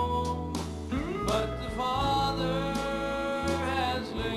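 Live southern gospel band playing a passage without words, keyboard over a steady bass. About a second in, a lead line slides up in pitch and then holds a wavering note.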